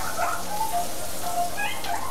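Food sizzling as it fries in a pan on the stove, a steady hiss, with a few short pitched sounds over it.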